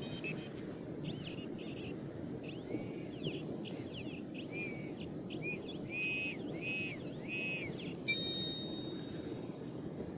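C-Scope Metadec 2 metal detector giving a target signal: a run of about nine high warbling tones, each rising and falling in pitch as it passes over a coin, growing louder from about six seconds in. A short, sharper burst follows near the end. Underneath runs a low rustle of handling in the grass.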